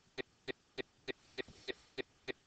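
Steady, even ticking, about three short sharp ticks a second.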